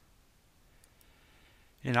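Near-silent room tone with two faint, short clicks about a second in.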